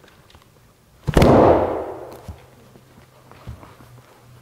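A single loud slam about a second in, dying away in the church's reverberation over about a second, with a smaller knock near the end. In a Good Friday Tenebrae service this is the strepitus, the loud noise that marks Christ's death.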